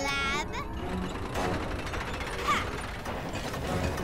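Cartoon sound effect of a train's track-laying machinery clanking and ratcheting steadily as it lays rails. A brief voice is heard at the very start.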